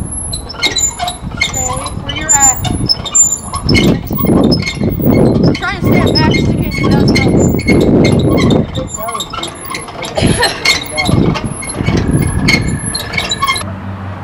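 Hand-cranked boat-trailer winch being wound in, its ratchet clicking over and over with a metallic ring as the boat is hauled up onto the trailer.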